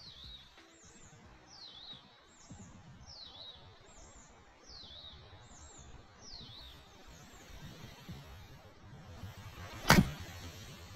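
A bird calling over and over, a falling-then-rising chirp about once a second, over light outdoor wind noise. Near the end, an iron strikes a golf ball with one sharp crack.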